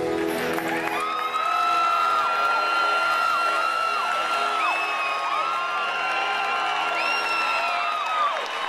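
Concert audience cheering and clapping, with many long high whoops and screams, as the last chord of the song dies away underneath.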